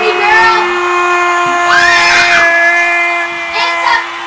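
A voice holding one long note at a steady pitch, with children's shouts and a whoop over it about two seconds in.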